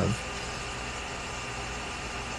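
Steady low background hum and hiss of room noise, with no changes or distinct events.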